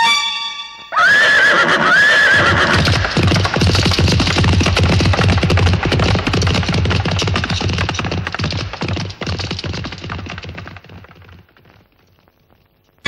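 A horse whinnies twice, in quick wavering calls about a second apart. Its hooves then beat rapidly at a gallop, fading away into the distance until they die out near the end.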